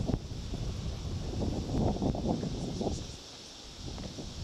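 Wind buffeting the microphone in uneven gusts, dying down about three seconds in.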